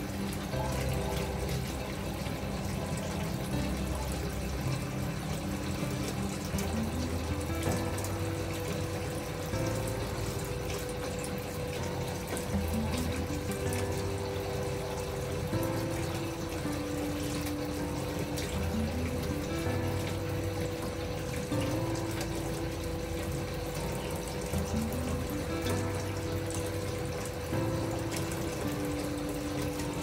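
Bath spout running at full pressure, a steady stream of water pouring into a bathtub as it fills. Gentle background music with held notes plays over the running water.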